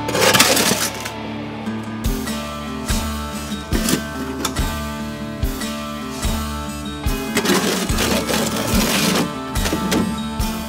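Background music with a steady beat. Over it, a steel shovel scrapes and scoops gritty mortar in a metal wheelbarrow: briefly at the start, and again for about two seconds near the end.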